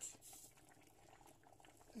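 Near silence with faint, irregular bubbling from a pot of beef soup simmering on the stove.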